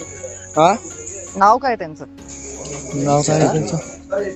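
Voices on a recorded phone call, with a steady high-pitched trill behind them that drops out for a moment in the middle.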